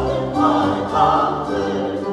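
Mixed choir singing a 17th-century Italian sacred oratorio, with a baroque ensemble holding steady bass notes beneath; the voices swell fuller about half a second in.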